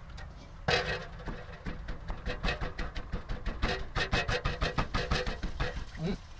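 Wooden pestle pounding chillies in a clay mortar: a loud knock about a second in, then a steady run of dull thuds, roughly three a second.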